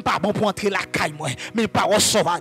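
A man praying aloud into a microphone in a rapid, rhythmic stream of short syllables that form no clear words, the pattern of speaking in tongues.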